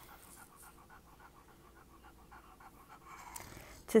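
Faint, fast, even panting, about eight breaths a second, in a quiet room.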